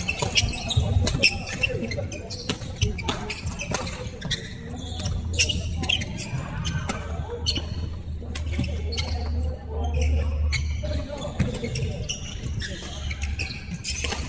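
Badminton rally in a large sports hall: repeated sharp racket strikes on the shuttlecock and footfalls on the wooden court, echoing in the hall.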